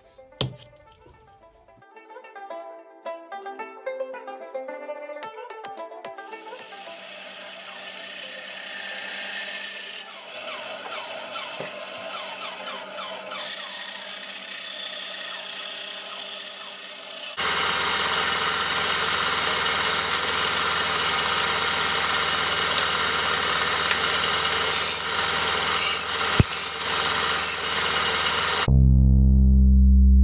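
A bandsaw cutting through aluminium angle as a steady run of machine noise, in several edited stretches. About two-thirds through it switches abruptly to a belt sander grinding the cut aluminium, with a few sharp clicks near the end. Light background music plays, and it is alone in the first few seconds.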